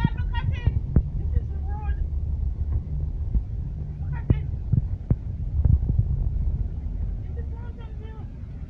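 A vehicle's low, steady rumble heard from inside the cabin as it moves along a flooded road, with several sharp knocks. Brief snatches of voices come through now and then.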